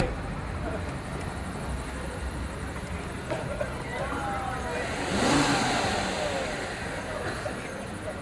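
A car's engine running as the car pulls away, swelling louder about five seconds in.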